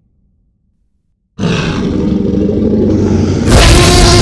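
A monster's roar sound effect for an animated creature. It starts suddenly after about a second and a half of silence as a deep growl, then swells into a louder, fuller roar near the end.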